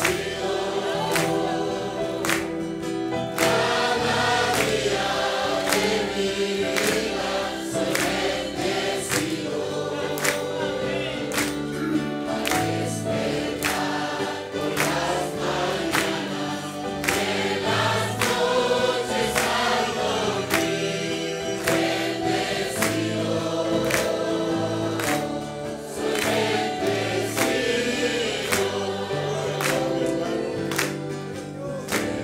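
Church congregation singing a worship hymn together with musical accompaniment, over a steady beat of about one and a half strokes a second.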